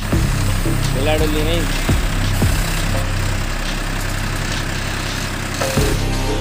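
Electronic background music with a falling bass-drum beat, mixed over a noisy field recording of a Swaraj tractor's diesel engine running as it powers a backhoe attachment. A brief voice comes in about a second in.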